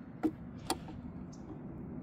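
Two light clicks about half a second apart from an Allen key worked in the robot's power switch, which has just been turned on.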